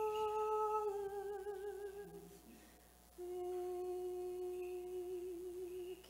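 A single voice chanting slow, long-held notes of Orthodox liturgical chant without clear words, with a slight vibrato. The first note fades away about two seconds in, and a new long note begins just after three seconds.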